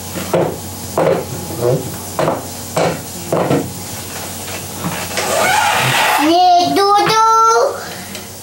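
A run of light clicks and knocks at uneven intervals. About six seconds in, a child's high voice calls out wordlessly, wavering up and down in pitch for about a second and a half.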